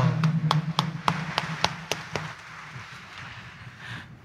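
Congregation applauding, with separate sharp claps over softer clapping that thins out and dies away about two seconds in.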